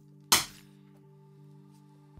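Quiet background music with steady held notes; about a third of a second in, one sharp click from the small metal-and-plastic Ledger Nano X hardware wallets being handled.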